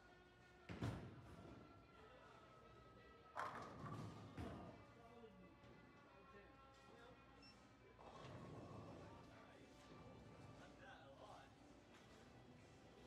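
Bowling ball thudding onto the wooden lane, then about two and a half seconds later crashing into the pins with a clatter of falling pins, over background music in a large hall. A lower rumble of lane machinery follows near the end.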